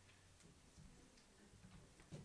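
Near silence: the quiet hum of the room with a few faint ticks or clicks.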